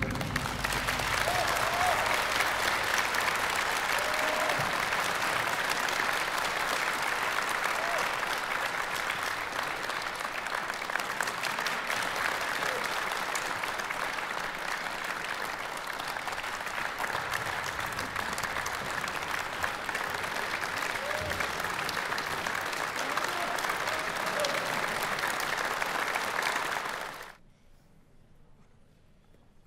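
Concert-hall audience applauding steadily at the end of a piece, cut off abruptly about a second before the end.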